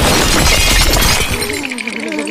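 Cartoon sound effect of a giant jelly monster shattering like glass, a dense crash of breaking pieces that dies away about one and a half seconds in.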